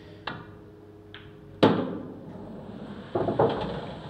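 An English 8-ball pool shot: a cue tip clicks against the cue ball, a lighter ball-on-ball click follows about a second later, and then comes a sharp, loud knock that fades away.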